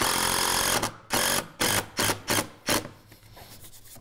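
Cordless impact driver driving a construction screw through a door jamb into the framing. It runs once for nearly a second, then gives about five short trigger pulses, two or three a second, setting the screw head flush.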